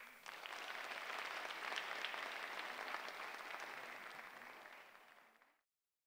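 Audience applauding, coming in right as the music ends, then fading away until it cuts off about five and a half seconds in.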